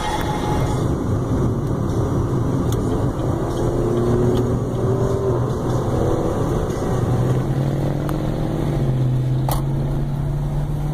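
Car engines and road noise heard from a moving car, with engine notes rising several times as cars accelerate over a steady low hum. A single sharp click comes shortly before the end.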